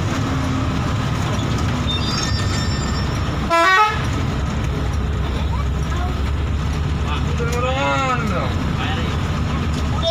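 Bus engine running steadily, heard from inside the cab, with a short horn toot about three and a half seconds in. A voice is heard briefly near the end.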